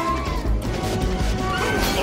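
Loud film score over fight sound effects: blows and a crash as two men brawl.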